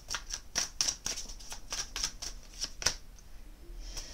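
A deck of oracle cards being shuffled by hand: a rapid, irregular run of crisp card clicks and flicks that thins out and stops about three seconds in.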